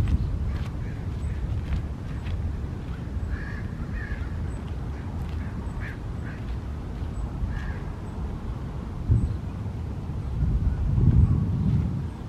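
Wind noise on the microphone, loudest in a gust near the end, with footsteps on gravel and a few short animal calls.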